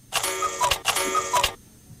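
A short electronic sound effect played twice in quick succession, each time the same ringing, chiming figure with a small falling two-note tone.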